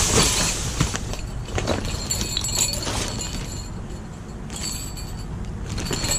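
Small jingle bells jingling as they are handled among plastic bags, with high, clear ringing tones twice, and plastic rustling.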